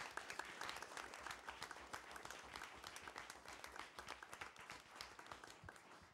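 Audience applauding, many hands clapping together, tapering off toward the end.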